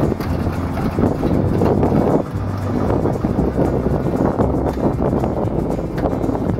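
1946 Dodge fire engine's engine idling steadily, with wind buffeting the microphone.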